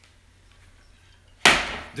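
A large plastic bowl set down hard on a kitchen counter: one sharp knock about one and a half seconds in.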